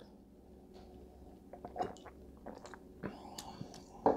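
Faint sipping and swallowing of beer from a glass, followed by a few soft, scattered mouth clicks and lip smacks as it is tasted.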